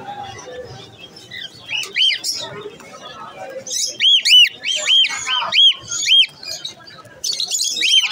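Caged birds chirping: short, high chirps that rise and fall in pitch, two near two seconds in, then a quick run of about seven between four and six seconds in.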